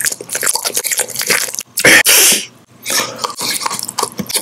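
Close-miked chewing and crunching of candy, a rapid crackle of small bites and mouth sounds, with one loud, sharp crunchy burst about two seconds in.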